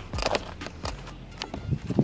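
Footsteps on an asphalt driveway: a handful of irregular short scuffs and knocks.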